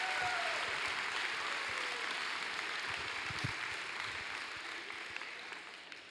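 Audience applause in a gymnasium, with a few voices in the crowd, dying away gradually over several seconds.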